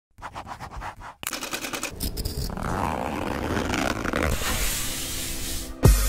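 Rapid scratching strokes of a pen on paper, about nine a second, for roughly a second. Then a noisy swell builds and grows louder over about four seconds, ending near the end in a sudden downward-sweeping bass boom as music kicks in.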